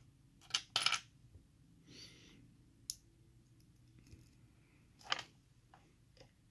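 Small brass lock pins and steel springs being handled with steel tweezers and set into a wooden pin tray: a few scattered light metallic clicks and clinks, the loudest about a second in, others around the middle and just before the end.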